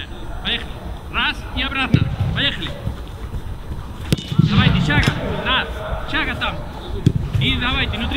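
Football being struck on a grass training pitch: a few sharp kicks, the clearest about four seconds in, amid players' voices calling out.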